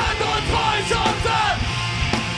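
A hardcore punk band playing live: two vocalists yell into microphones over loud drums and a dense band sound.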